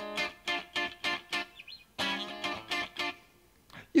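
Electric guitar playing a funky muted riff: a small chord on the middle strings struck in short, choppy strokes, each note cut off by easing the fretting-hand pressure. There are two quick phrases of about half a dozen strokes each, with a short pause between.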